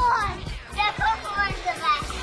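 Children's excited voices over upbeat background music with a steady beat.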